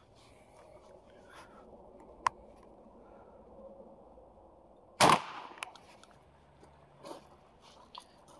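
A single 12-gauge shotgun shot about five seconds in, from a Beretta A300 Ultima Patrol semi-automatic firing #4 buckshot, with a short echoing tail and a smaller click about half a second after it. A lone sharp click comes a few seconds before the shot.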